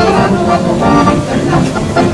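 Amateur choir singing with accordion accompaniment.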